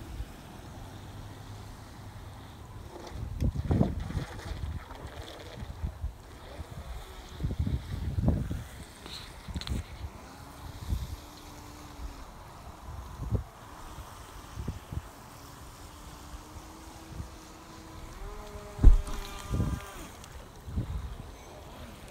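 The GoolRC GC001 RC speed boat's electric motor whining faintly across the water, its pitch shifting with the throttle as it is steered and rising to its highest, strongest note for a couple of seconds near the end. Low gusts of wind hit the microphone throughout, with a sharp thump near the end.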